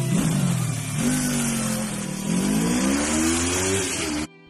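Motorcycle engine, its pitch falling as it eases off, then rising again as the throttle opens, over a steady hiss.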